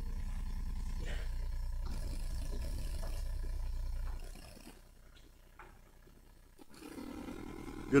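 A steady low hum, deepest at the bottom of the range, that cuts off about four seconds in. It leaves quiet room tone with a few faint knocks.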